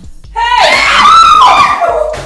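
A woman screaming: one long, high-pitched scream starting about half a second in and lasting about a second and a half.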